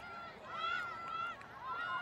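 Women's voices shouting during a rugby ruck, several high-pitched calls overlapping one another with no clear words.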